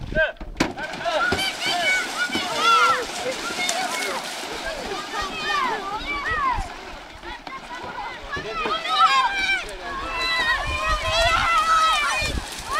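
A group of children shouting and cheering, many high voices overlapping, with water splashing as they run through the shallows.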